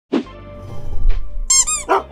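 Short intro music sting with sound effects: a sudden opening hit, a low bass swell, then two high, arching squeaks about a second and a half in.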